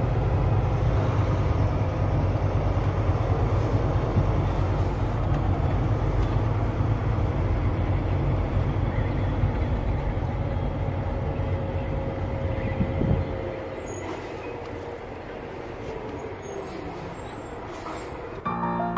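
Vehicle engine and road rumble heard from inside the cab while driving slowly. About 13 seconds in there is a brief louder sound, after which the rumble drops away to a quieter hum.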